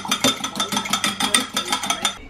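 Fork whisking eggs in a glass measuring jug, clinking against the glass in a quick steady rhythm of about seven strokes a second, each stroke with a short glassy ring.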